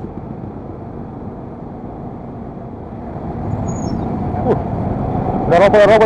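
Low, steady rumble of a motor scooter and the cars around it in a slow-moving traffic jam, growing louder from about halfway. Near the end a voice cuts in with a quavering, wavering pitch.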